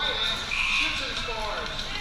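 Players calling and shouting across the court in short voice sounds that slide up and down in pitch, with no clear words.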